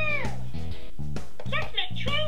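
Sesame Street Elmo toy train's recorded high, squeaky Elmo voice singing over a backing tune, with a long held note at the start and more singing near the end.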